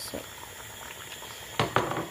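A pot of soup ingredients bubbling on the stove, a steady crackle with small pops. Two louder short knocks come close together near the end.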